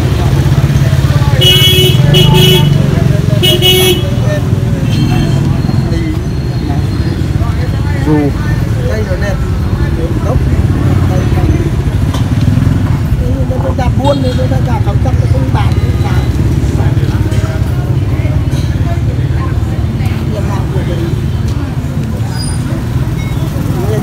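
Street-market traffic: motor scooter engines running with a steady low rumble, several short horn beeps in the first few seconds, and a crowd's chatter.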